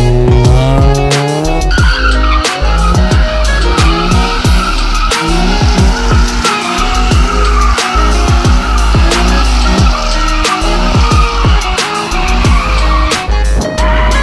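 Car tires squealing in a continuous wavering screech as a car spins donuts on asphalt, under loud music with a heavy bass beat.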